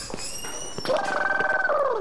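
A man snoring loudly: a long, strange, animal-like snore that starts about a second in and falls in pitch as it fades at the end. The sound is loud enough that listeners mistake it for an animal or a bomb.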